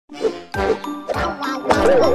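Cartoon sound effects: a quick run of about half a dozen bright, ringing dings and chimes, each struck sharply and dying away.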